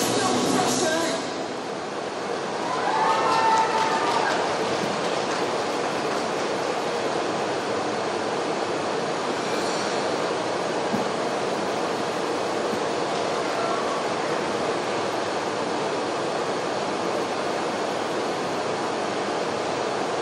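Program music ending in the first couple of seconds, then steady, even machine-like noise with a faint low hum.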